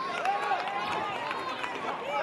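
Several voices shouting and calling out across a sports arena, overlapping one another, with a few sharp knocks near the start.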